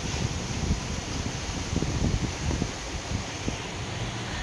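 Air buffeting the microphone: a steady, uneven low rumble under a hiss, with faint rustling.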